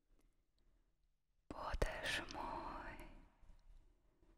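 A person whispering: a breathy hiss that begins about halfway in, with a short click near its start, and fades out over a couple of seconds.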